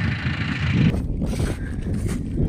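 Wind buffeting the microphone outdoors, a low rumbling noise that changes abruptly about a second in, where the hiss above it drops away.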